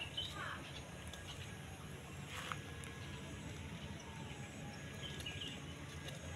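Quiet outdoor background with a steady low rumble and a few faint, brief bird chirps.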